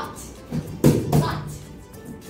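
Children's hands slapping word cards on a table, two sharp slaps close together about a second in, over background music.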